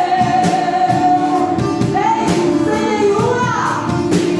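Live worship band: women's voices singing a gospel song over a drum kit with cymbals and a strummed acoustic guitar. The voice holds one long note, then the melody moves up and down in the second half.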